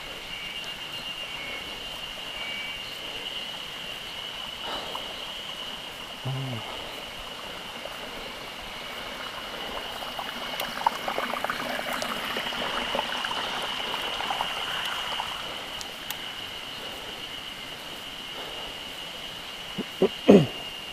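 A steady high-pitched insect drone over the light road noise of a bicycle rolling down a rough, cracked forest road. For several seconds in the middle a crackling, rushing sound swells and then fades.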